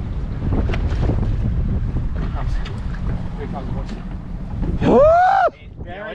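Wind buffeting the microphone over the low rumble of the boat's engine. About five seconds in, a man gives one loud, drawn-out shout.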